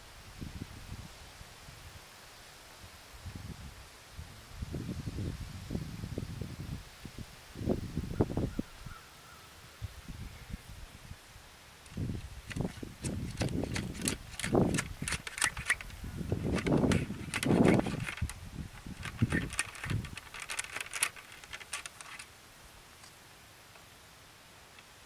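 Scouring stick (ramrod) ramming the charge down the barrel of a .70 calibre matchlock musket. Dull knocks and thuds come first, then from about halfway a denser run of sharp clicking and rattling strokes of the rod in the bore.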